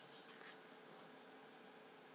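Near silence: faint room tone with a steady low hum, and a brief faint rub about half a second in as a plastic Blu-ray case is handled.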